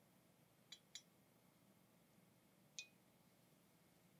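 Near silence broken by a few faint clinks: a glass carafe's spout tapping the rim of a small silver cup as wine is poured. There are two light taps about a second in and one slightly ringing clink near the three-second mark.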